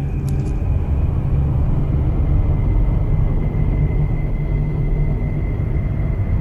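A loud, steady, deep rumble with a faint high, even tone held through it.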